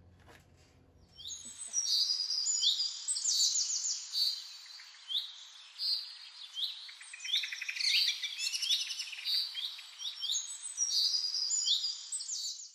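Songbirds singing: many quick, high chirps and sweeping notes, overlapping, beginning about a second and a half in.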